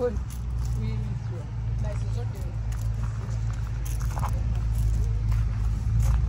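A steady low rumble that grows slowly louder, with faint voices of people nearby.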